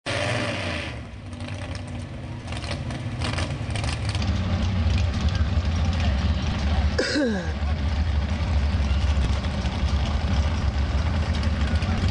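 Pickup truck engine running hard under load as it pulls a weight sled. It is a steady low rumble that grows louder over the first few seconds. About seven seconds in, a short shout falls in pitch.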